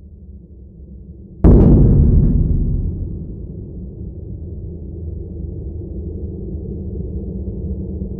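Horror logo sound design: a low drone, then a single sudden loud cinematic boom about a second and a half in that rings out over a second or two, leaving a steady low drone.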